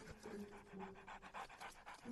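A Dobermann panting rapidly, about seven or eight quick breaths a second.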